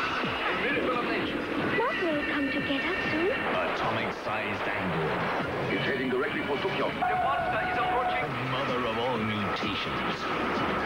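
Monster-movie trailer soundtrack: voices and music layered over action sound effects, dense and continuous.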